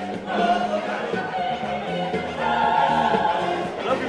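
A mixed choir of men and women singing together, holding long notes.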